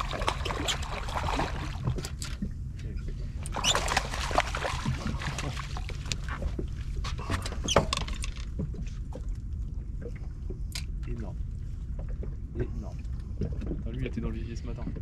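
A small sea bass being reeled in and swung aboard a boat: water splashing in the first two seconds and again around four seconds in, and short sharp clicks from reel and handling, over a steady low rumble.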